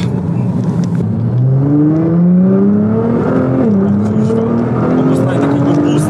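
Twin-turbo V6 of a tuned 660-hp Nissan GT-R accelerating hard, heard from inside the cabin. The engine note climbs steadily, drops at an upshift about three and a half seconds in, then climbs again.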